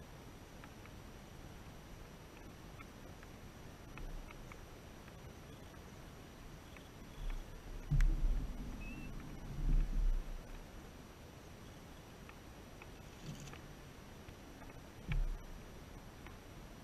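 Quiet outdoor background with a few dull low thumps, the loudest about eight and ten seconds in and another near the end, plus a sharp click at about eight seconds and scattered faint ticks.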